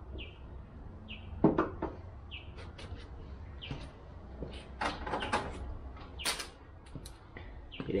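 Sharp knocks and clatters of tools and parts being handled, the loudest about a second and a half in, with more around five and six seconds. Over them a bird gives a short chirp roughly once a second, and a low steady rumble runs underneath.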